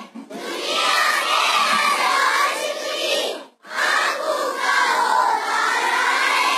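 A small group of young girls singing a naat together loudly into a microphone, in two long phrases with a brief break a little past halfway.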